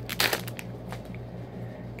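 Foil wrapper of a Topps Olympics trading-card pack crinkling as it is torn open by hand, with a short burst of crackling about a quarter second in, then lighter rustling.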